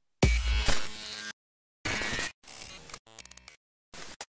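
Glitchy electronic logo sting. A deep bass hit comes about a fifth of a second in, followed by several chopped bursts of buzzing electronic sound, each cutting off abruptly, with a rapid stutter near the end.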